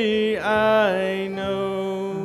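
A man singing a slow hymn chorus to acoustic guitar accompaniment, sliding into a new long-held note about half a second in.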